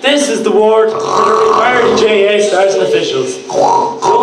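Speech: a voice talking almost without a break, with a brief pause shortly before the end.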